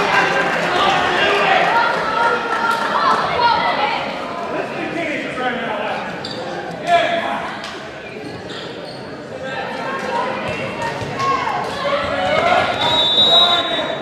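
Crowd voices and chatter echoing around a gymnasium between volleyball rallies, with scattered thuds of a ball bouncing on the court and a louder thump about seven seconds in. A short, steady referee's whistle sounds near the end, the signal to serve.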